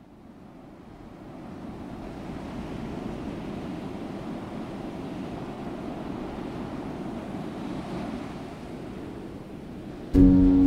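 Ocean waves washing steadily, fading in over the first couple of seconds.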